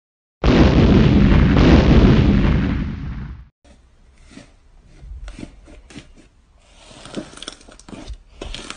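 Cartoon bomb explosion sound effect: a loud blast about half a second in that fades over about three seconds and then cuts off. After it, quieter soft crackles and clicks of hands pressing and squeezing blue slime.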